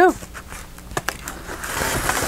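Light handling noises: a paper envelope being moved and turned over on a cutting mat, with a few small clicks and taps, the sharpest about a second in.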